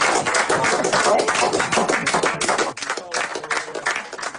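A pub audience applauding, with voices and cheers among the clapping, at the end of a live fiddle and folk session. The clapping thins out a little near the end.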